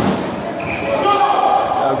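Table tennis rally: a celluloid ball struck by bats and bouncing on the table, a topspin loop answered with a block, in a large sports hall with voices in the background.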